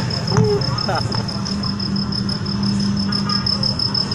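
A cricket trilling steadily, a continuous high-pitched pulsing tone, over a low steady hum, with a few faint scattered voices.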